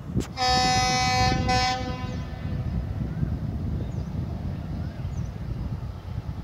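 Diesel locomotive's horn sounding one long blast of about a second and a half, then the low rumble of the approaching train.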